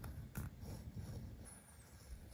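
Leather edge beveler shaving along the edge of a leather strip on a stone slab, a faint close-up scraping, with one sharp click about half a second in.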